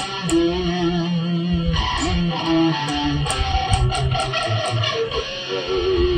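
B.C. Rich Warlock electric guitar improvising a metal lead line: one note held for about a second and a half, then a run of quicker single notes.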